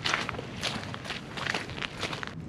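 Footsteps crunching on a gravel path, about three steps a second.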